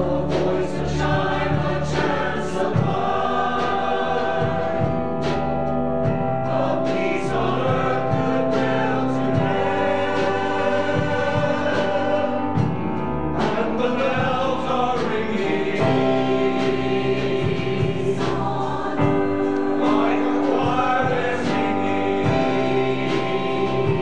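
Mixed choir singing a Christmas song in parts, over instrumental accompaniment with percussion.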